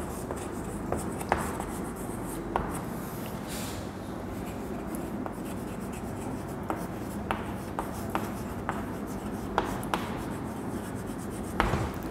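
Chalk writing on a chalkboard: a steady faint scratching, broken by irregular sharp taps of the chalk against the board.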